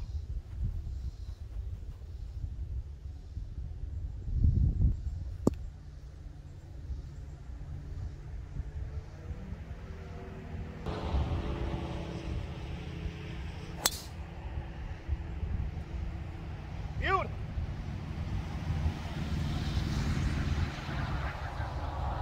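A golf driver striking a ball off the tee: one sharp crack about two-thirds of the way through, over a low rumble.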